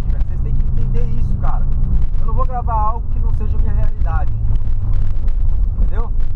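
Volkswagen Polo sedan driving, heard inside the cabin: a steady low engine drone with road rumble. Short snatches of a man's voice come in a few times.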